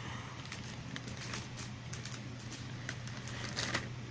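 Hard plastic toy parts clicking and rattling as hands handle and fit them. The clicks are irregular, with a louder cluster near the end.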